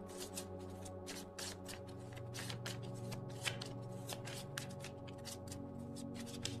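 A deck of tarot cards being shuffled by hand, a continuous run of quick, irregular card flicks, over soft background music with sustained tones.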